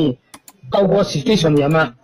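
A man speaking over a recorded phone call, broken near the start by a short pause that holds a couple of sharp clicks like mouse-click sound effects.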